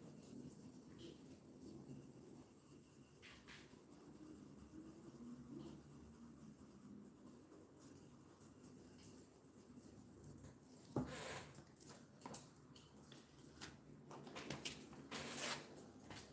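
Paintbrush rubbing and dabbing black paint through a plastic stencil onto a wooden board, a faint, soft scratching. About eleven seconds in come louder, sudden rustles and crackles as the plastic stencil is lifted off the board.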